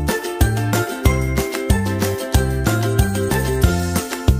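Background music with a steady beat and a bass line moving in steps.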